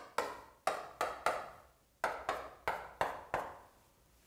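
Chalk tapping against a blackboard as short line marks are written, about ten sharp taps in two quick runs with a brief pause between them.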